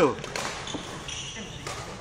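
The end of a shouted word, then faint knocks and taps from badminton play on a wooden court, with no clear single hit standing out.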